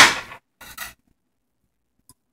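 A brief scrape of a spatula against a nonstick frying pan holding pieces of marinated beef, about half a second in, after the tail end of a spoken word; the rest is nearly silent.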